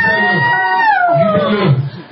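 A person's long, high-pitched wailing scream, held steady and then falling in pitch near the end. Low voices or chanting pulse underneath.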